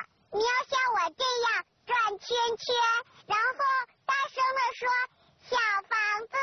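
A high-pitched, childlike voice singing short sing-song syllables one after another, with brief pauses between them.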